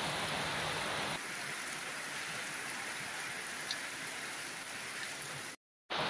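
Heavy rain falling steadily on flooded, muddy ground, an even hiss. It drops slightly about a second in and cuts out completely for a moment just before the end.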